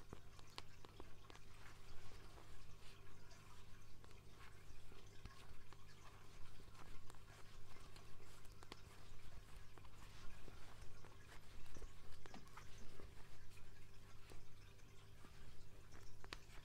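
Circular knitting needles clicking softly and irregularly as stitches are worked in fluffy yarn, close to the microphone, over a steady low electrical hum.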